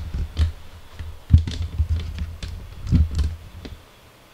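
Epson EcoTank inkjet printer mechanism working: irregular clicks and knocks over a low motor hum that dies away near the end.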